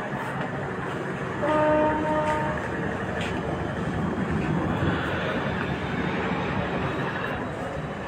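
A vessel's horn sounds one steady blast of about a second, a little after the start, over a steady rumble of engine and harbour noise.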